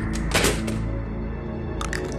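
Tense film score with sustained tones, broken by a cluster of sharp knocks or clicks in the first second and a few more near the end.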